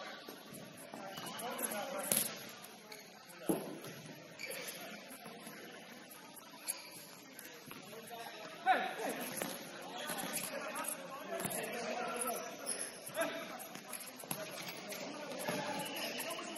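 Futsal ball being kicked and passed on a wooden gym court, with sharp knocks about two, three and a half and nearly nine seconds in, the last the loudest. Players' shouts carry through the echoing hall.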